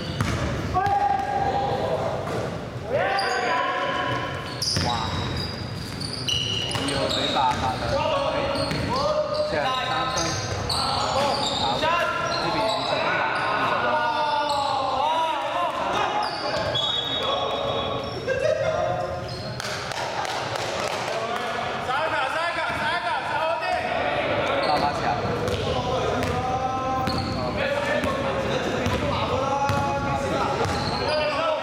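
A basketball dribbled and bouncing on a hardwood gym floor during a game, with voices calling out across the court, all echoing in a large sports hall.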